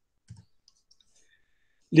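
A single short click about a third of a second in, followed by a few faint ticks. A man's voice starts right at the end.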